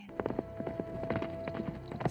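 Hoofbeats of several horses, a quick, uneven run of knocks, over a soundtrack with two steady held notes.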